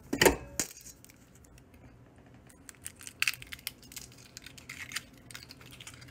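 Handling noise over a mixing bowl: two sharp knocks within the first second, then scattered light clicks and taps.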